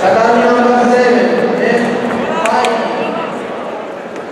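Voices in a large hall shouting long, drawn-out calls, the kind of yelling spectators and corners give during a kickboxing bout. There is a sharp smack about two and a half seconds in.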